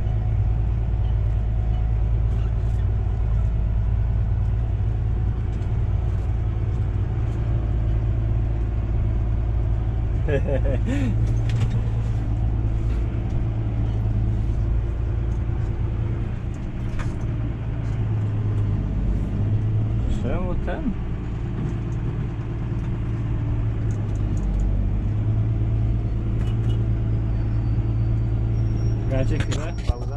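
Valtra tractor's diesel engine running steadily, heard from inside the cab as the tractor drives over the silage clamp to pack it down.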